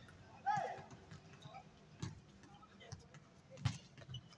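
A short falling shout from a player about half a second in, then a few sharp thuds of a basketball bouncing on the hard outdoor court, the loudest just before the end.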